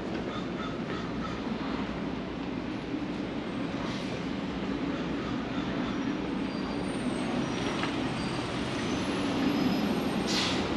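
Steady street traffic noise with a vehicle engine running, and a few faint high squeals in the second half.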